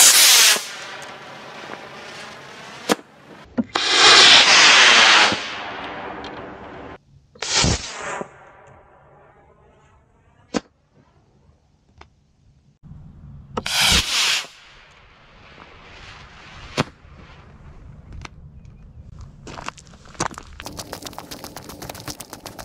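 Estes A8-3 black-powder model rocket motor igniting and burning as the rocket lifts off: a short loud hiss that fades away, heard again in several further bursts with sharp pops in between. Near the end, a quick run of regular steps on dry ground.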